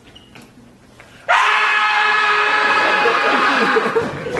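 A single voice screaming: after a brief hush, a loud, long scream starts suddenly about a second in and is held at a steady pitch for nearly three seconds.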